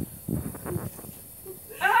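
A woman's low, pained vocal sounds from the burn of a reaper chilli, with clear speech breaking in near the end.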